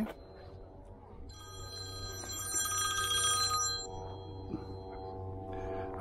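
Mobile phone ringing with a musical ringtone. It swells about a second in, is loudest in the middle, and its lower notes fade out near the end.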